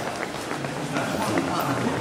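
Indistinct talk of several people echoing in a large hall, with a few footsteps and light knocks.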